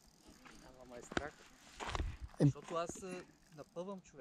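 Quiet talk from a person's voice, fainter than the nearby speech, with one sharp click a little over a second in.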